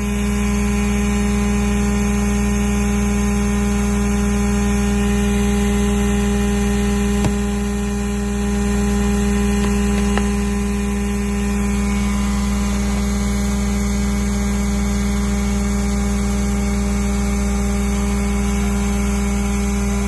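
Hydraulic rock splitter running under pressure, its power unit giving a steady mechanical hum with a strong low tone while the wedge spreads in a drilled hole and cracks the slab. A faint click comes about seven seconds in and another about ten.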